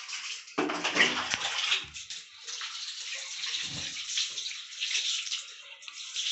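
Water poured from a plastic mug over a baby being bathed, splashing and running off onto a tiled floor. A heavier splash comes about half a second in and another near four seconds.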